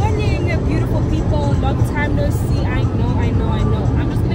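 Women's voices inside a car, over a steady low rumble of the car's running.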